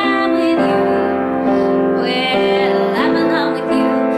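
A woman singing with her own piano accompaniment: sustained piano chords that change a few times, with the sung melody over them.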